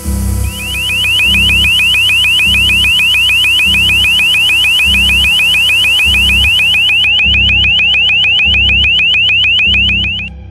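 Loud electronic alarm tone, a rapid rising chirp repeated about six times a second, the warning signal of an acoustic hailing device aimed at a vessel approaching within 1600 m. A high hiss runs under it and stops about seven seconds in, and background music with a low pulsing beat plays beneath.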